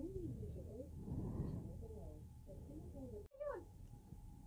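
Faint, indistinct voices over a steady low hum. The sound cuts out completely for an instant about three seconds in.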